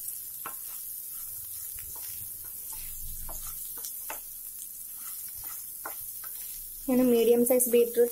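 Diced beetroot and carrot frying in oil in a non-stick pan: a low, steady sizzle with scattered scrapes and taps as a wooden spatula stirs the vegetables.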